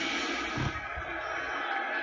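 Steady stadium crowd noise from a televised football broadcast, heard through a TV speaker, with a brief low thump about half a second in.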